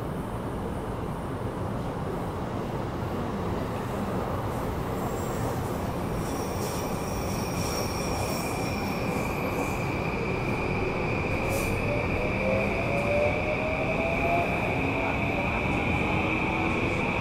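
E235-series electric train heard from inside a motor car, with steady running rumble. About six seconds in, a steady high inverter tone starts. From about ten seconds, the traction motor whine rises in pitch as the train accelerates.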